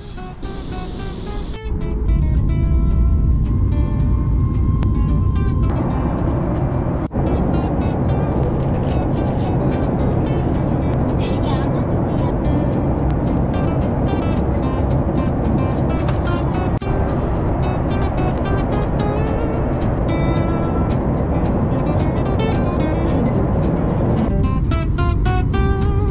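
Steady low roar of a jet airliner's cabin noise, starting about two seconds in and running on evenly, with background music over it.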